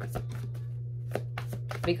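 Tarot cards being handled: a few sharp, irregular card snaps and taps, over a steady low hum.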